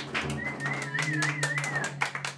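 Large hand-played frame drum tapped repeatedly at the close of a song accompanied by acoustic guitar. Over it is a warbling high tone, like a whistle, lasting about a second and a half.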